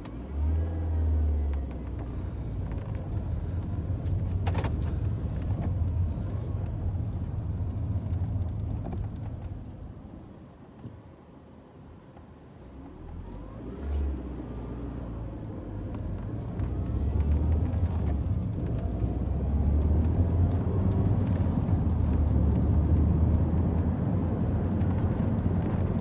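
A Mini's engine and road noise heard from inside the cabin. It rises in pitch as the car pulls away, eases off and goes quieter about ten seconds in, swells briefly, then grows louder as it accelerates again for the rest of the drive.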